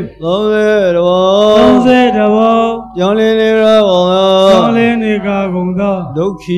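A Buddhist monk chanting in two long, drawn-out phrases at an almost steady pitch, with a short break about halfway through.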